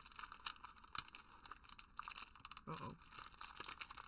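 A foil trading-card booster pack crinkling and tearing as it is ripped open by hand, a quick scatter of small crackles. The wrapper tears open unevenly.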